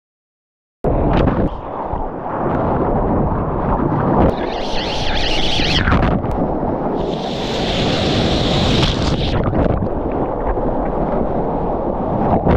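Loud rush of churning whitewater and wind buffeting a surfer's action-camera microphone while riding a wave. It cuts in about a second in, with a hissier spray of foam in the middle.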